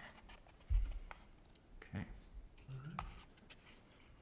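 Quiet handling noise at a lectern: a low bump about a second in, then a few light clicks and rustles, typical of someone working a laptop near the microphone.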